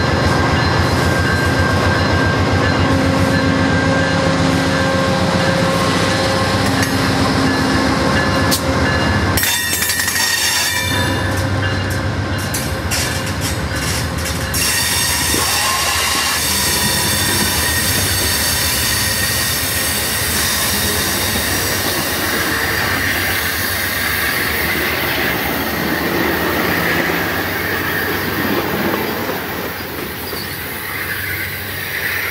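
Amtrak P42DC diesel locomotive passing close by with its engine droning, then the passenger cars rolling past on curved track, wheels clicking and squealing. The sound drops away near the end as the last car pulls off.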